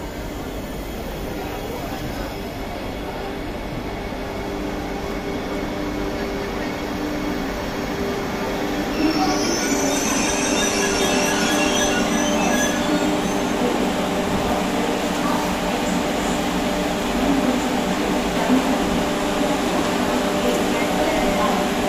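Vande Bharat Express electric multiple unit trainset moving along the platform, its wheels and running gear growing steadily louder. Thin high-pitched squealing joins about nine seconds in.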